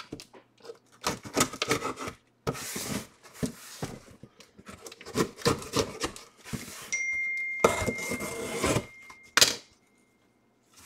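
A cardboard shipping box being handled and worked open: irregular scraping, rustling and knocks of cardboard and packing tape. A thin high tone runs for about two seconds near the end.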